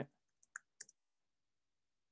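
Faint computer keyboard keystrokes: a few quick key clicks in the first second of typing, then near silence.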